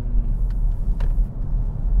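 Steady low road rumble inside the cabin of a moving 2021 BMW X7 xDrive40d on 24-inch wheels, with two faint clicks about half a second and a second in.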